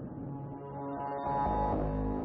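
Serge Paperface modular synthesizer (1978) sounding sustained pitched electronic tones rich in overtones; a deep low tone enters and swells louder about two-thirds of the way through.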